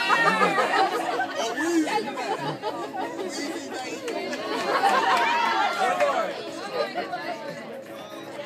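A group of people talking at once, many overlapping voices in a general hubbub, growing somewhat quieter near the end.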